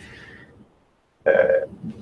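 Speech only: a short pause in a man's talk that drops to dead silence, then a drawn-out hesitant "uh" in the second half.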